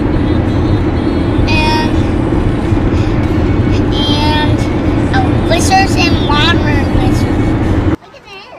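Steady road and engine rumble inside a moving car's cabin, the loudest sound throughout.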